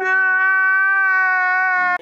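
A man's drawn-out crying wail, dubbed in as a reaction sound effect: one steady held note lasting about two seconds that cuts off suddenly.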